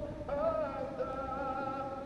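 A solo voice singing the national anthem, holding long sustained notes with a brief breath just after the start.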